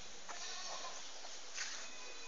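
A goat bleats once, briefly, starting about a third of a second in. About a second and a half in there is a brief sharp noise.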